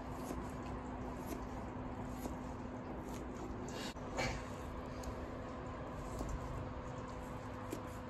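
Knife cutting partly frozen salmon into cubes on a plastic cutting board: a few faint taps and slices, the clearest a little after four seconds in, over a steady low hum.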